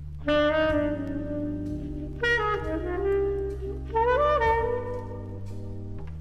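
Tenor saxophone playing a slow jazz ballad from a vinyl LP, with three long phrases entering about a third of a second, two seconds and four seconds in, over low held accompaniment.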